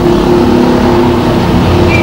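A steady low hum made of several held tones over a low rumble, with a brief high tone near the end.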